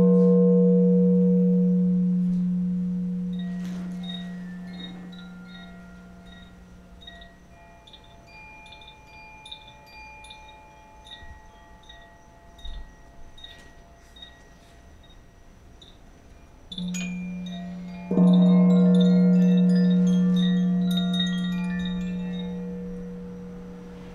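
Bar chimes tinkling in scattered runs over the deep, long-ringing tone of a struck singing bowl. The bowl dies away slowly over several seconds, then is struck again, once softly and then louder, about three-quarters of the way through.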